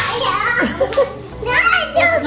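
A small child's high voice chattering and calling out, with other voices in the room.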